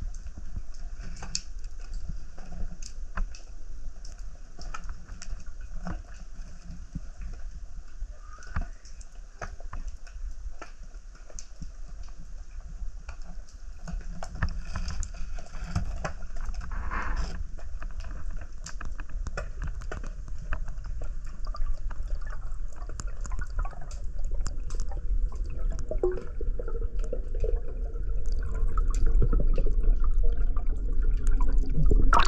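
Underwater sound picked up by the camera: muffled water noise with many small crackling clicks. A low rumble grows louder near the end.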